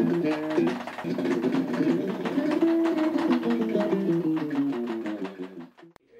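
Electric bass guitar played fast: a rapid run of plucked notes that stops just before the end.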